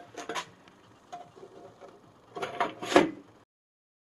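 Sheet-metal case of a CD player being slid over its chassis and settled into place: light scrapes and knocks, then a louder clatter of metal knocks about three seconds in, after which the sound cuts off abruptly.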